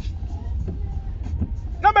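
Low, steady rumble inside a car's cabin, with a man's voice starting up near the end.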